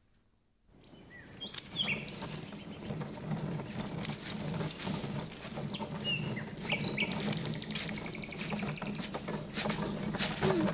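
Garden ambience in a cartoon soundtrack: birds chirping in short calls spread through the scene over a steady high insect-like hiss and a low hum, starting after about a second of silence.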